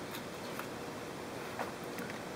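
Steady background hiss with a few faint clicks and rustles from multimeter test leads and their clips being handled on a fuel sender's terminals.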